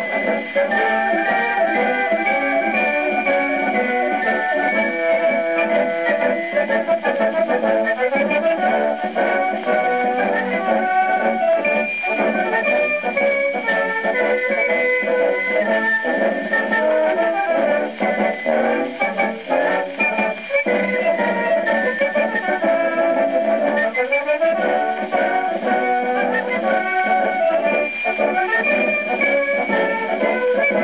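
Imperial German military band playing a lively march from a c. 1920 Homochord 78 rpm record on a gramophone. The sound is thin, with no deep bass and no high treble, as on an acoustic-era disc.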